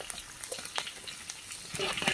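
Chopped ginger, garlic, scallion and chillies sizzling in hot oil in a large iron wok, with scattered light clicks and scrapes of a metal spatula stirring them.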